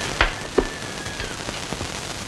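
Steady hiss and crackle of a worn old film soundtrack, with two sharp clicks in the first second and a faint high steady tone that fades out just past a second in.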